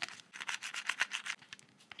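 Fingernails picking and scratching at the edge of a clear plastic lid coated in dried nail polish: a quick, irregular run of small clicks and scrapes, the start of prying the dried polish layer loose to peel it.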